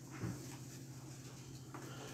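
Faint room tone with a steady low hum and light background noise, and one soft knock about a quarter second in.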